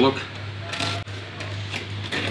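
Paper gift wrapping being picked at and torn open by hand, with short crinkles and rips, over a steady low hum.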